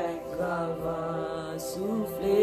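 A woman singing a slow worship song, holding long notes that slide between pitches.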